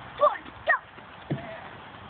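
A young child's voice: two short high-pitched cries, about a quarter and three-quarters of a second in, then a brief low falling sound a little after one second.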